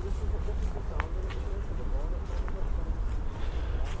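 Faint, murmuring voices over a steady low rumble, with a single sharp click about a second in.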